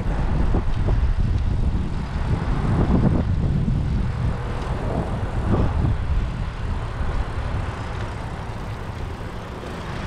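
Wind buffeting the microphone of a moving recumbent trike riding into a headwind: a loud, uneven low rushing noise that eases slightly near the end.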